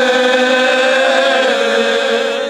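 Men's choir singing Cante Alentejano a cappella, several voices holding long notes together in harmony, with some of the lower voices moving to a new pitch about halfway through.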